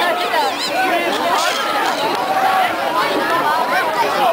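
Crowd chatter: many people talking at once, voices overlapping at a steady level.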